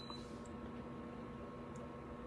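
Quiet room tone: a faint even hiss with a steady low hum.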